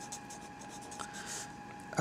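Felt-tip marker writing letters, faint scratching strokes of the tip across the writing surface. A thin steady tone runs underneath.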